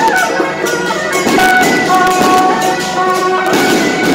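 Traditional procession band playing: a loud, wavering wind-instrument melody over steady drum, gong and cymbal beats.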